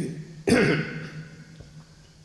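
A man clearing his throat once, sudden and loud, about half a second in, dying away within a second.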